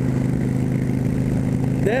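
Cruiser motorcycle engine running at a steady cruising speed, heard from the rider's seat, with a constant rush of wind and road noise.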